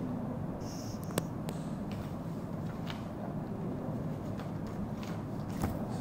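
Steady low room hum with a few faint handling clicks and rustles, one sharper click about a second in.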